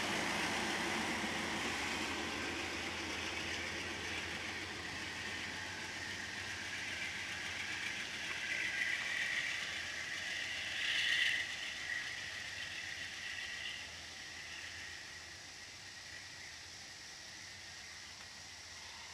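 Amtrak passenger cars rolling past on the rails as the train pulls away from the station, the running noise fading steadily as it moves off. There is a brief louder, higher-pitched stretch around the middle.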